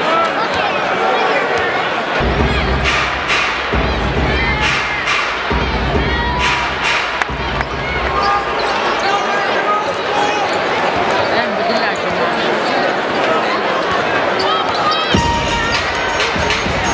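Arena crowd noise from a large basketball crowd, with bass-heavy music from the arena sound system playing from about two seconds in, dropping out around the middle and coming back near the end.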